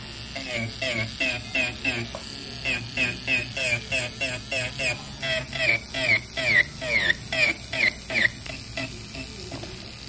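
Electric nail file with a carbide bit running with a low steady hum against the nail, under a long run of quick, high chirps with falling pitch, about three or four a second.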